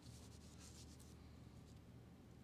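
Near silence: low room hum with faint light rustling, mostly in the first second.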